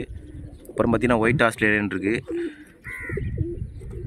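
A flock of domestic pigeons cooing.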